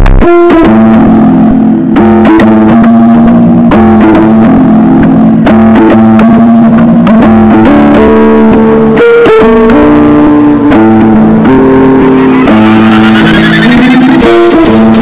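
Instrumental hip-hop type beat: a stepping melody over held low notes, with a few sparse drum hits and a rising sweep near the end.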